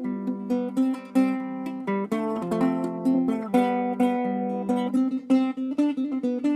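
Nylon-string acoustic guitar fingerpicked: a quick melody of plucked notes, several a second, ringing over one another.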